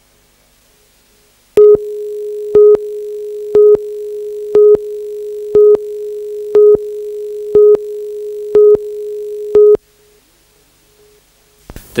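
Television news tape countdown leader: a steady line-up tone with a louder, higher beep once a second, nine beeps in all. It starts about a second and a half in and cuts off suddenly just before the tenth second.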